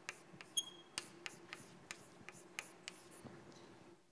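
Chalk writing on a blackboard: a string of faint, irregular sharp taps and scrapes, with a brief high squeak about half a second in.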